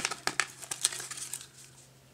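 Packaging crinkling and rustling as it is handled, in a quick run of crackles that thins out over the first second and a half.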